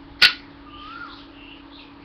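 A single sharp click about a quarter of a second in, against a faint steady hum; a brief faint gliding tone follows.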